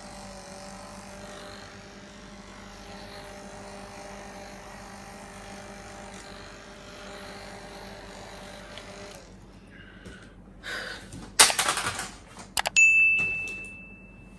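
Small handheld battery fan running with a steady whirr and hum, which stops about nine seconds in. Near the end, a loud sharp clatter and a click are followed by a short ringing ding that fades over about a second and a half.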